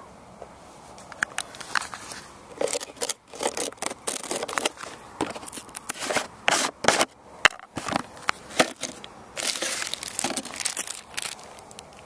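Hands opening a geocache container and handling its contents: irregular clicks, scrapes and rustles of plastic and paper, with a denser stretch of rustling near the end.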